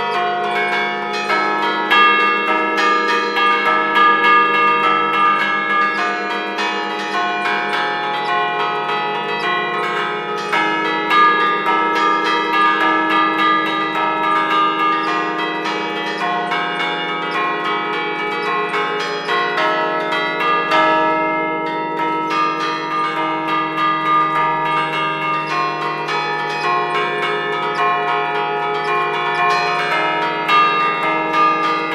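Church bells played from a hand keyboard (tastiera): the chains pull the clappers against the stationary bells, striking a fast, continuous melody of overlapping ringing notes, loud and close.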